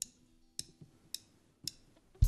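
Four sharp clicks evenly spaced about half a second apart: a tempo count-in just before a folk band with violin and accordion starts to play.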